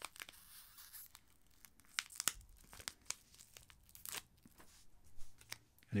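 A small sample sachet being torn open by hand: a short stretch of tearing, then scattered crinkles and crackles of the packet as it is handled.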